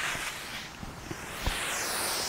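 Garden hose, fed by a pump from a water tank, spraying water onto vegetable beds: a steady hiss, with one small knock about one and a half seconds in.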